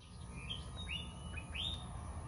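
A small bird chirping outdoors: a few short, rising chirps about a second apart, faint over a steady high hiss.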